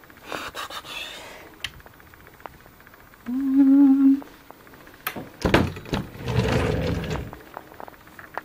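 A woman hums one short, steady 'mm' about three seconds in. About five seconds in comes a sharp thunk as a cabinet door is handled, followed by about a second of rustling and sliding while the cabinet's contents are searched.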